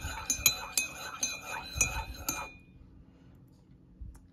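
Metal teaspoon stirring tea in a ceramic mug, clinking against the mug's sides about four times a second with a light ring. The stirring stops about halfway through.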